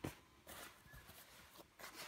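Near silence, with faint soft rustles of jacket fabric being handled and smoothed flat, about half a second in and again near the end.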